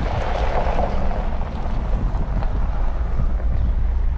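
Pickup truck driving, heard from inside the cab: a steady low rumble of engine and tyres, with wind buffeting on the microphone.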